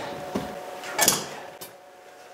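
Pliers and a loose steel window regulator being handled: a short metallic clatter about a second in, with a couple of light clicks around it.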